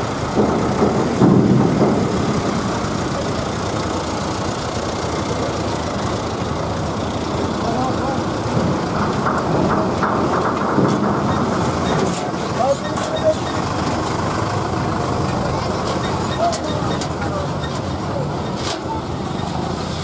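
Loaded trucks driving slowly up a ferry ramp one after another, their engines running, against a steady din of people talking close by.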